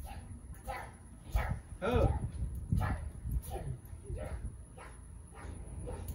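Toddlers bouncing on a trampoline: a string of soft thumps from the mat, roughly one or two a second, with short high vocal sounds from the children, the clearest about two seconds in.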